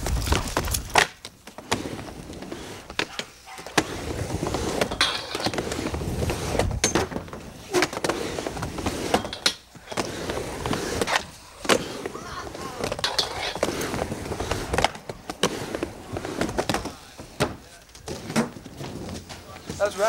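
Skateboard run on a wooden mini ramp: urethane wheels rolling back and forth across the plywood, with repeated sharp knocks of the trucks and board hitting and sliding on the coping at each wall. It begins with a heavy thump as the run starts from running steps.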